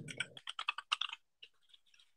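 Typing on a computer keyboard: a quick run of key clicks for about a second, then a few scattered keystrokes.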